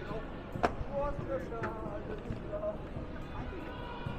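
Busy pedestrian street ambience: passersby talking and footsteps over a steady low city hum, with a sharp knock about half a second in and a fainter one a second later.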